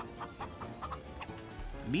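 A chicken clucking in a few short calls, a cartoon sound effect, over soft background music.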